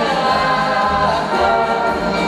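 Live band playing: a woman singing lead vocals into a microphone over electric guitar, bass guitar and drums.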